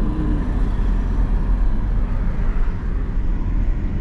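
Steady road noise of a moving car heard from inside the cabin: a constant low rumble with tyre and wind hiss.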